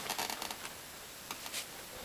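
Faint handling noise: light rustling with a few soft clicks.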